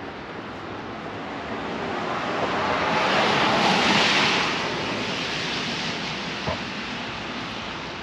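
A vehicle passing on the wet road, its tyre hiss swelling up to a peak about halfway through and then fading away.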